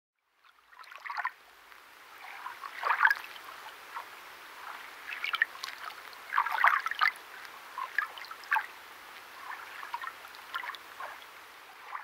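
Faint trickle of water: irregular drips and splashes over a soft hiss, a little louder about three seconds in and again around seven seconds.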